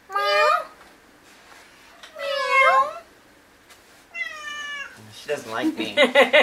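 Domestic cat meowing three times, about two seconds apart, each meow under a second long; the last one falls in pitch. A voice laughing comes in near the end.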